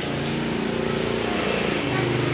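A motorbike engine running with a steady hum, its pitch dropping slightly and settling lower near the end.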